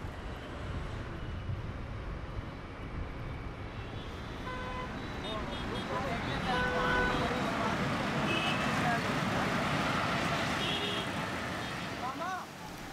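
Congested road traffic: a steady drone of many engines and tyres, with car horns starting to honk about four seconds in and growing more frequent as the traffic noise swells.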